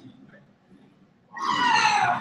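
A quiet room for over a second, then a person's loud, drawn-out vocal sound starting about a second and a half in, its pitch sliding down.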